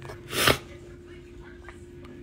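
A single sneeze, one short sharp burst of breath close to the phone's microphone, about half a second in.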